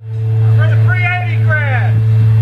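A man talking into a microphone through a PA system, over a loud steady low hum that starts suddenly and runs on unchanged.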